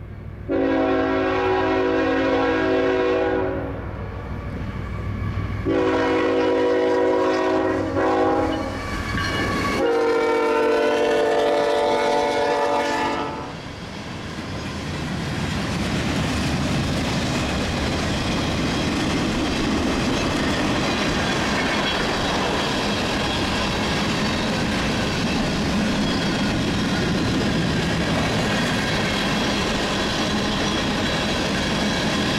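A CSX freight locomotive's multi-note horn blows three long blasts over the first thirteen seconds. Then the freight cars roll past with a steady rumble of wheels on rail.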